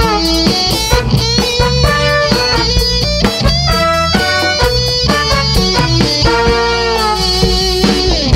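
Live dance band playing the instrumental introduction to a cha-cha: an electric guitar lead over a drum kit, at a steady dance tempo.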